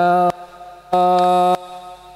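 Men chanting an Islamic sholawat, led by a singer on a handheld megaphone, holding two long steady notes with a brief pause between them.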